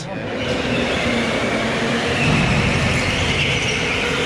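Go-karts running laps on an indoor concrete track: a steady rush of kart noise, with tires squealing in the corners from about halfway through.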